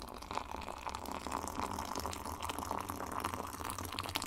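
Liquid trickling steadily, with a fine crackle over a low hum underneath.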